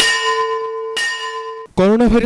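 A bell struck twice, about a second apart, each strike ringing on with a clear steady tone before it is cut off short.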